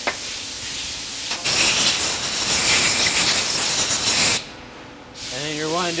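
Aerosol brake cleaner spraying onto disassembled AOD transmission governor parts to clean them. It hisses steadily, much louder for about three seconds from just over a second in, then stops, with a shorter spray near the end.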